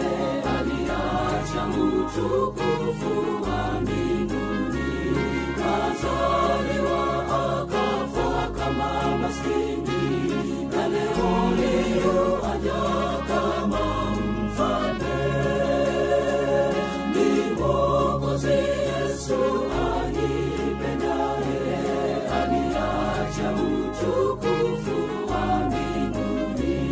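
Gospel choir singing with a band accompaniment, a bass line holding each note for a second or two.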